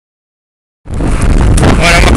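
Silence, then about a second in, a sudden loud, steady wind buffeting on the microphone of a camera carried on a moving mountain bike, rumbling most at the bottom.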